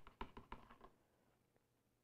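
Near silence: room tone, with a few faint short clicks in the first second.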